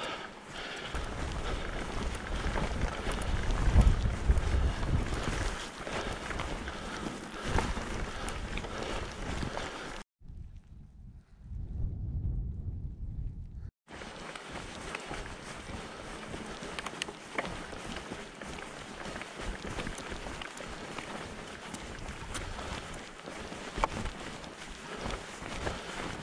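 A mountain bike rolling over a rough grassy moorland track, with tyre noise, a few light rattling knocks and wind buffeting the camera microphone as a low rumble. About ten seconds in, the sound dulls to the low rumble alone for a few seconds, then returns.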